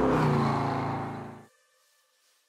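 Car engine sound effect: a steady engine note that fades out over about a second and a half, then silence.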